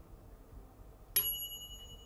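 A single kitchen-timer bell ding about a second in, ringing on for about a second as it fades: the signal that dinner is ready.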